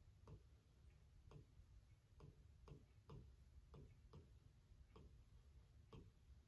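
Near silence with faint, evenly spaced ticking, about two ticks a second.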